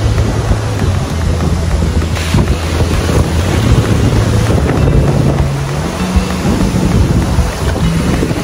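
Strong sea wind buffeting the microphone, over the steady wash of surf breaking on the beach.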